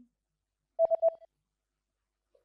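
A short electronic beep, a single steady tone of about half a second with three quick clicks in it, about a second in; the rest is silent.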